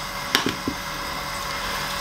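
Onions in hot oil in a stainless sauté pan sizzling with a low, steady hiss, with two light clicks in the first second.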